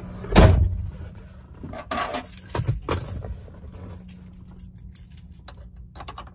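A 1999 Ford F-350 Super Duty's 6.8L V10 idles steadily in Park, heard as a low hum from inside the cab. A thump comes about half a second in, and a few light clicks and knocks follow around two to three seconds in.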